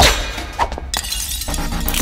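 A loud crash-and-shatter sound effect hits at the start over electronic music, led in by a rising whoosh. The music drops out briefly, then a bass-heavy electronic beat comes back in the second half.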